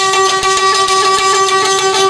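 Folk violin holding one long steady note over a rhythmic accompaniment.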